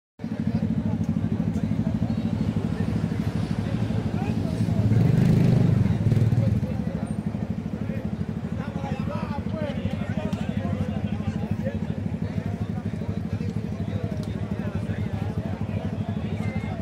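A motorcycle engine idling with a steady low pulse, swelling louder for a couple of seconds about five seconds in, with people chatting in the background.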